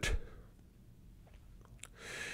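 A pause in a man's speech: quiet room tone with a few faint mouth clicks, then a soft breath in near the end.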